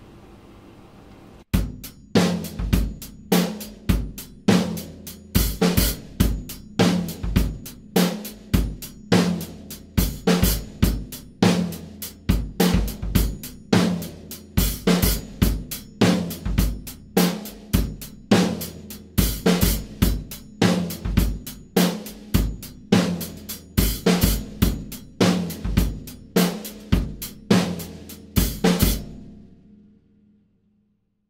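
Acoustic drum kit playing a disco groove: bass drum, hi-hat, and snare doubled with the floor tom on the two, with accents dug in on the bass drum and a slightly loosened hi-hat. It starts about a second and a half in and stops just before the end.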